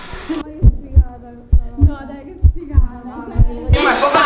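Heartbeat sound effect: four double low thumps, roughly one pair a second. The rest of the sound goes muffled and dull over them, then opens up again just before the end.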